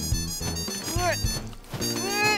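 Children's cartoon background music, with a short swooping rise-and-fall in pitch about halfway through.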